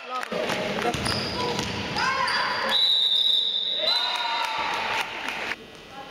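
A referee's whistle blown in one long steady blast about three seconds in, stopping play. Before it, a basketball bounces on the gym floor amid shouting voices.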